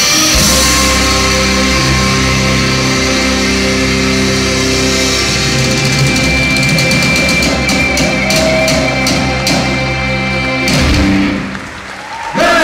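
Live rock band with drum kit and guitar playing the closing bars of a heavy song in a hall. The music cuts off abruptly near the end.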